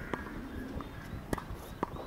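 Three faint, sharp knocks over low background noise: a tennis ball bouncing on a hard court and being struck by a racket.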